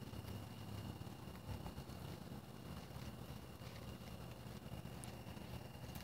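Faint outdoor background noise: a steady low rumble with a thin, steady high tone above it and a few faint clicks.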